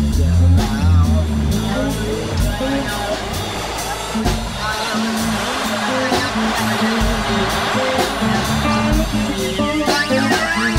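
A band playing: regular drum hits and bass guitar under guitar, with a warbling theremin line gliding up and down in pitch. The bass is heavy for the first second or so, then drops back.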